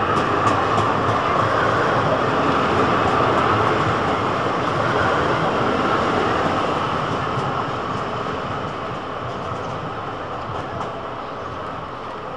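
Articulated street tram rolling past close by on grooved street rails: a steady rumbling run of wheel-on-rail noise with a few light clicks, loudest in the first half, then fading slowly as the tram moves off.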